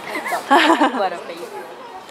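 Women's voices talking, with a short loud spell of speech about half a second in, then quieter.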